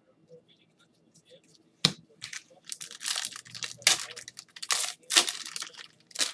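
A 2019-20 Panini Contenders Draft trading-card pack wrapper being torn open and crinkled by gloved hands. There is a sharp crack about two seconds in, then a run of crackling tears and crinkles.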